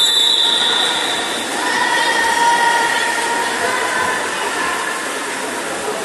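Steady splashing of swimmers racing front crawl in an indoor pool hall. A shrill held whistle-like tone sounds in the first second and a half, and a lower long held tone follows from about two to three and a half seconds in.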